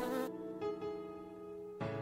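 Cartoon bee buzzing, a steady quiet drone over soft background music; the sound changes just before the end.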